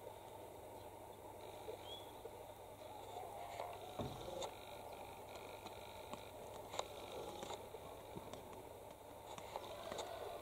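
Quiet rural outdoor ambience: a faint steady background with scattered faint clicks, the clearest about four and seven seconds in, and a couple of brief faint chirps.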